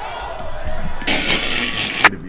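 Basketball game audio from a gym: a ball bouncing on the court, then about a second in a loud hissy rush of noise that cuts off suddenly at the end.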